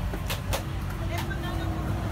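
Background traffic: a steady low rumble of motor vehicles, with a few short clicks and faint voices in the distance.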